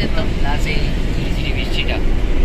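Inside the cabin of a moving car, the engine and tyres make a steady low rumble on the road.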